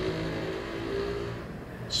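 A steady motor-vehicle engine hum with a few held tones, dying away about a second and a half in.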